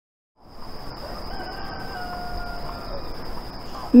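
Village ambience fading in: a rooster crowing once, one long call that sags a little in pitch at the end, over a steady high insect whine.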